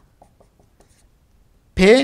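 Faint short scratches and taps of a felt-tip marker writing on a whiteboard, a few strokes in the first second. A man's voice starts just before the end.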